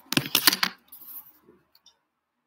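A quick run of sharp clicks and taps close to the microphone, thinning out and stopping just before the end.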